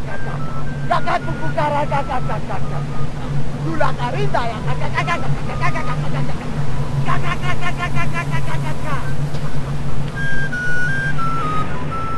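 A man chanting a wordless incantation in short bursts over a steady low hum, with a rapid trilling call a little after the middle. Near the end, a flute-like melody of stepped notes comes in.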